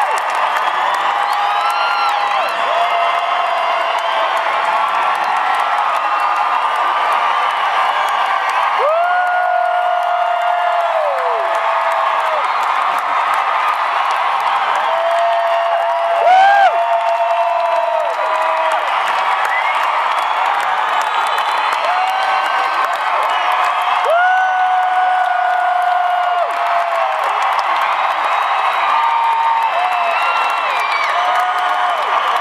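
Large arena crowd cheering and screaming without pause, with many long high-pitched screams and whoops rising above the din. One scream is louder about halfway through.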